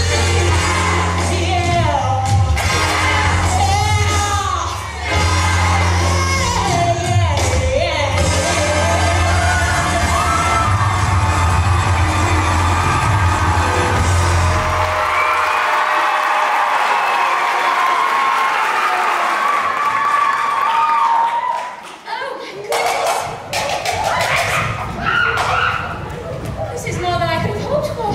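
A musical number sung by an ensemble over music with a heavy bass line. The bass drops out about halfway through while the singers hold a long final note, and the song ends with an audience clapping and cheering in a large hall.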